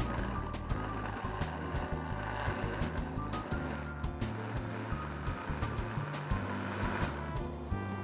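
Countertop blender running steadily, whirring as it purées a pancake batter of grated ñame de palo, egg, water and milk, and stopping shortly before the end. It sits under background music with a steady bass beat.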